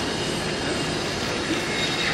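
Many camera shutters firing rapidly at once, merging into a dense, steady clatter.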